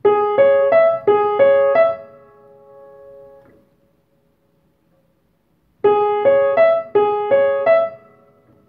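Acoustic upright piano playing two short rising three-note figures without the sustain pedal. After the notes stop, a tone keeps ringing for about a second and a half: the undamped strings of a silently held A octave are vibrating in sympathy, the sympathetic overtones being demonstrated. The ringing then cuts off, and the same figures are played again near the end.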